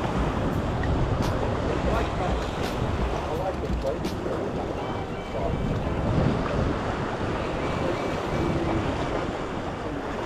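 Sea surf washing against jetty rocks, a steady rushing wash, with wind buffeting the microphone in low rumbles.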